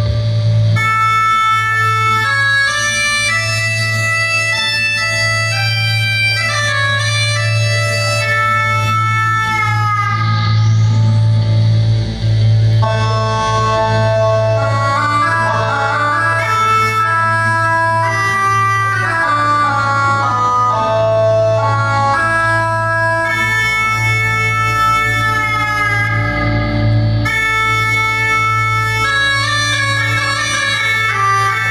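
Live rock band playing, with an organ sound on electronic keyboard carrying held chords that change every couple of seconds over a steady bass note.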